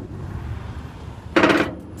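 A steel winch bar working a trailer's cargo-strap winch. It gives one loud metallic clank about one and a half seconds in as the winch is turned tighter to take the load off the pawl so the strap can be let out.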